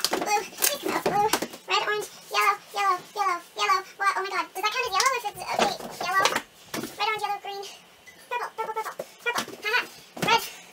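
A young woman's voice talking quickly in short bursts, calling out book colours under time pressure, with a few sharp knocks from books being pulled off and set on a shelf.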